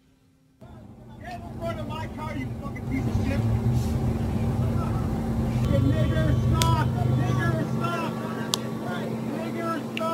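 Traffic stopped at a city intersection, with a steady low engine hum and rumble that starts just after a brief silence. Voices and shouting carry over it, recorded on a phone.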